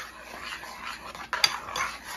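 A metal spoon stirring thick, creamy potatoes in a saucepan, scraping the pan, with one sharp knock about one and a half seconds in.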